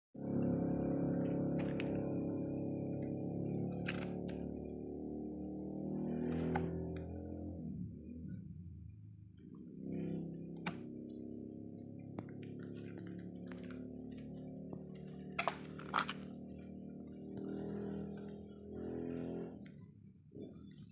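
Soft background music over a steady high chirping of night insects. Several sharp clicks, two in quick succession about three-quarters of the way through, match a concave branch cutter snipping the branches of a serut bonsai.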